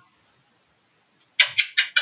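A woman blowing a quick string of about four kisses near the end, each a short, sharp lip smack.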